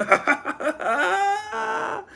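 A man laughing: a few quick bursts of laughter, then a high-pitched drawn-out laugh from about a second in.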